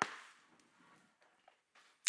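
Near silence with faint room tone, after a brief tap right at the start.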